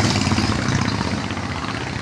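A motor vehicle engine running close by, a steady rumble that slowly gets quieter.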